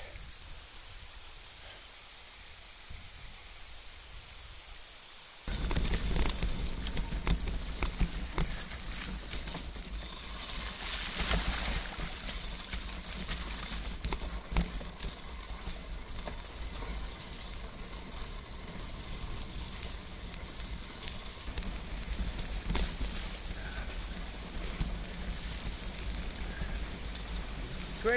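A steady hiss of rain, then from about five seconds in a mountain bike rolling over a wet, rocky trail: a low rumble with many small rattles and knocks, under rain and wind noise on the camera's microphone.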